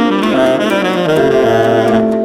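Jazz played by a small band: a tenor saxophone runs down in steps to a low held note about a second in, while other instruments hold notes above it.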